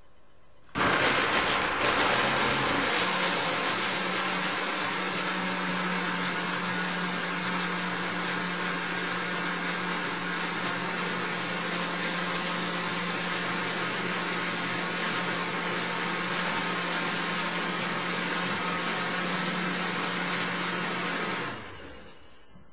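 Countertop blender switched on about a second in, puréeing raw carrots with water into soup, and switched off near the end. It is rougher for the first couple of seconds while the chunks are caught, then runs as a steady, even whir with a low hum.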